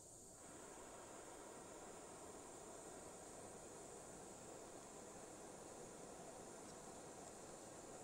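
Faint, steady hiss of a propane torch flame playing on a thick stainless steel shift knob, heating it toward heat colouring.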